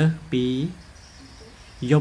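A man speaking in short phrases, with a faint, steady, high-pitched insect trill heard in the pause between them.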